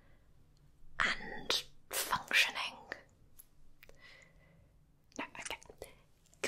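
A woman whispering short phrases close to the microphone, with pauses between them.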